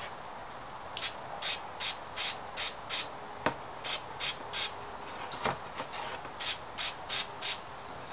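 Aerosol spray-paint can hissing in short bursts, two or three a second, in three runs, as paint is sprayed into a tin can. A couple of sharp clicks come between the runs.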